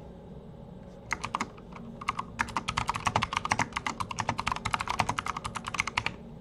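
Typing on a computer keyboard: a few separate keystrokes about a second in, then a fast, even run of keystrokes, about ten a second, that stops just before the end.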